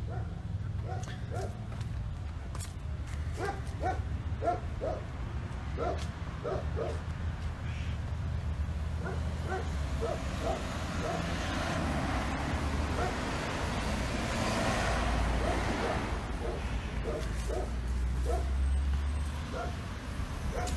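A dog barking repeatedly in short runs of two or three barks, over a steady low rumble that swells into a louder wash of noise in the middle.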